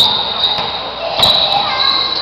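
Basketball bouncing on an indoor court in a live gym game, with a sharp bounce right at the start and another a little over a second in. Thin high squeaks from sneakers on the floor come in the second half, with the hall's echo around them.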